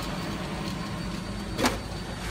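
Steady fan noise of a laser cutter's fume-extraction vent blower running, with a faint low hum, and a brief scuff near the end.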